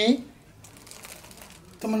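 Clear plastic wrapping around a folded cloth crinkling quietly as the package is handled and passed from hand to hand.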